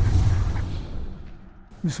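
The tail of an intro sound effect, a deep boom with a whoosh, fading away over about a second and a half, then a man's voice beginning right at the end.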